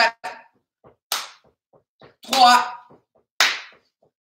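A man doing a cardio warm-up, with two short, sharp hissing bursts, one about a second in and one near the end, and faint quick taps between them. His voice counts 'three' in the middle.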